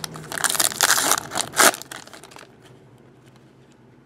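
Clear plastic wrapper being torn off a trading card pack and crumpled by hand: a second or so of crinkling that ends in one sharp crackle, then dies away.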